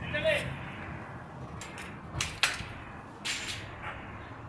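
Several sharp cracks or knocks, the loudest two about a quarter second apart a little after two seconds in and another over a second later, with a brief voice right at the start.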